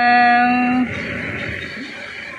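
A drawn-out 'wow' in a voice, held on one steady note for just under a second and louder than the talk around it, then fading away.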